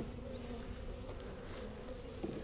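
Honey bees buzzing over an open hive box, a faint, steady hum from a low-population colony with a failing, drone-laying queen. There is a light click at the very start.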